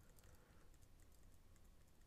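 Near silence with faint taps on a computer keyboard as a value is entered.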